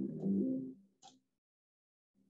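A person's voice trailing off in the first second, then a brief soft sound about a second in, then near silence.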